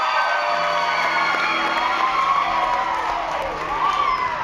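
Several voices whooping and yelling together in long, high, gliding calls over a low held musical note that comes in about half a second in.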